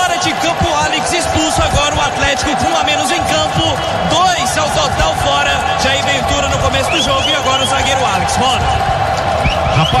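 Indistinct talking on a sports radio broadcast that the recogniser could not make out, over a steady background hum.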